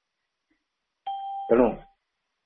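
A short electronic beep about a second in: two steady pitches held for about half a second, with a man's voice starting over its tail.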